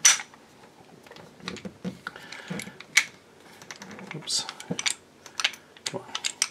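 Metal clicks and clacks from the slide and frame of a Tisas Bantam 9mm 1911 pistol being handled and worked back together. There is a sharp click at the very start and another about three seconds in, with lighter clicks and rattles between them.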